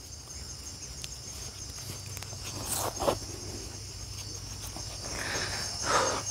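Crickets chirping steadily in a high, pulsing trill, with a couple of short rustles about halfway and footsteps swishing through grass near the end.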